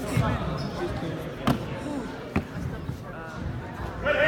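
A basketball bounced twice on a hardwood gym floor, the shooter dribbling at the free-throw line before the shot, amid spectators' chatter.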